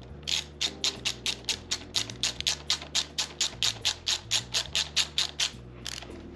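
Small hand ratchet clicking at a fast, even pace, about five clicks a second, as it is worked back and forth to tighten a motorcycle clutch-lever pivot nut. The clicking stops shortly before the end.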